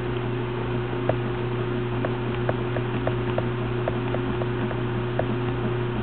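Short clicks of the Velleman HPS10SE oscilloscope's push buttons, about two a second, as its timebase is stepped down. A steady low electrical hum runs underneath.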